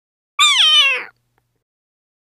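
A cat's single high-pitched meow, falling in pitch over about two-thirds of a second, starting about half a second in.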